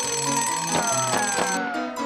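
A cartoon alarm clock's bell ringing over the series' upbeat theme music, which has a bouncing bass line. The ringing stops about one and a half seconds in, while several tones glide downward near the end.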